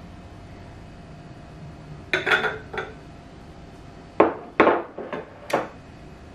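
Glassware handled on a kitchen counter: a glass measuring jug and a glass bottle knocking and clinking as they are set down and picked up. About six short sharp knocks come in the second half, after a quiet start.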